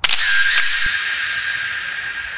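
Camera shutter sound effect: a sudden click, then a hiss that slowly fades, with a steady high whine running through it.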